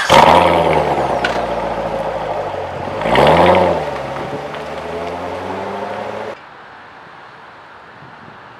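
2017 Corvette Grand Sport's 6.2-litre V8 through its quad-tip exhaust, revved hard and falling back toward idle. It gives a second throttle blip about three seconds in, then cuts off abruptly about six seconds in, leaving only a low background.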